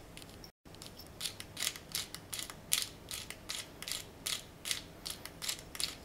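Pepper mill grinding black pepper: a steady run of short, dry clicks, about three a second.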